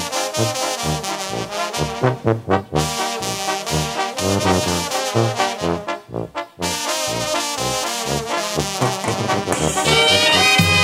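Sinaloan-style banda music with trombones and trumpets playing over a bass line that steps note by note. The music changes to a brighter passage just before the end.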